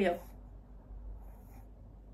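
The tail of a woman's spoken word, then quiet room tone with a faint, brief rustle about a second and a half in.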